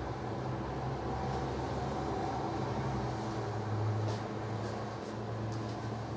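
A steady low mechanical hum, like a small appliance or fan running, with a few faint ticks in the second half.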